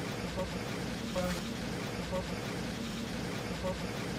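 Faint, indistinct background voices over a steady hum of room noise.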